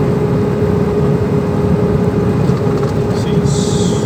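Iveco truck's diesel engine running in tenth gear under engine braking on a long downhill grade, heard inside the cab: a steady drone with a steady whine over it. A short hiss comes near the end.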